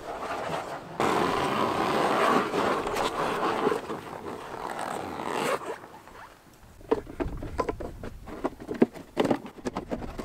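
Rubber track of an Argo Avenger 8x8 being pulled off over its tyres: a dense rubbing and scraping of rubber on rubber for about four and a half seconds, then a short lull and a run of light knocks and clatter as the track end is handled.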